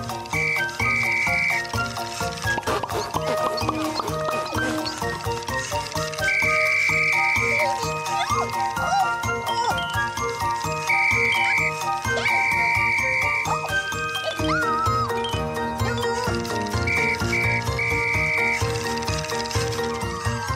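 Gentle, tinkly children's-show background music: chiming notes over a steady pulse, with repeated short high held tones and a few brief squeaky glides.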